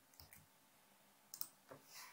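A few faint, scattered clicks from a computer keyboard and mouse while code is being edited.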